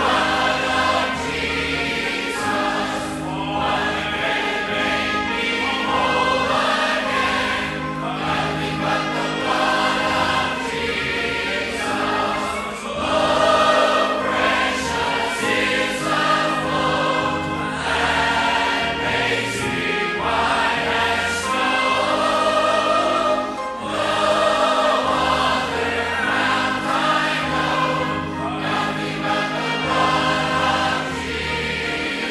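Church congregation and choir singing a gospel hymn together with instrumental accompaniment, the voices and instruments holding long notes.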